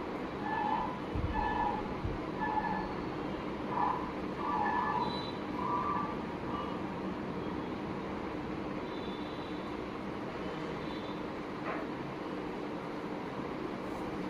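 Steady room hum, with about seven short high-pitched notes in the first six seconds and a single faint click near the end.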